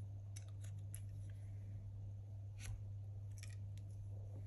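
Light clicks and scrapes of copper pipe against a white plastic push-fit elbow as the pipe is handled and pushed into the fitting: a few sharp clicks in the first second, one more a little before three seconds, and a short cluster near the end as the pipe goes in. A steady low hum sits under it all.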